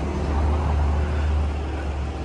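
Low, steady outdoor rumble, swelling slightly in the first half and then easing off.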